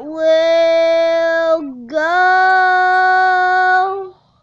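A boy singing two long held notes, the second a little higher than the first, with a brief downward slide between them.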